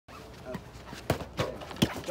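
Three sharp knocks in the second half, from a field hockey goalie's foam kickers and leg guards striking the artificial turf as she steps and shifts across the goal.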